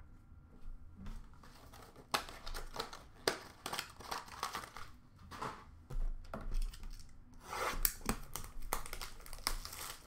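Trading cards and their cardboard and wrapper packaging being handled: a run of rustles, crinkles and sharp taps, busiest in two stretches early and late.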